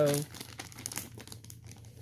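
Clear plastic bag crinkling softly as it is handled and folded over by hand.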